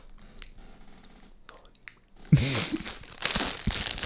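Plastic bread packet crinkling and rustling as it is handled and opened, loudest in the last second or so.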